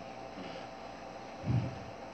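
Quiet room tone: a faint steady hiss, with one brief, soft, low sound about one and a half seconds in.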